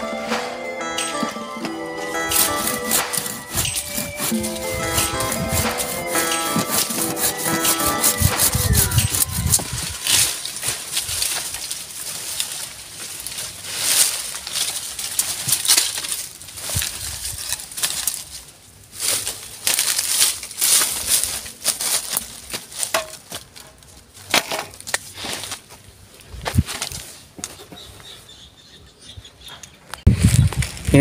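Background music for about the first nine seconds. Then a hand saw cutting into green waru (sea hibiscus) stems in irregular rasping strokes.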